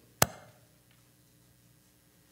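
A single sharp click or knock about a quarter second in, with a short ringing tail, then quiet room tone with a faint steady hum.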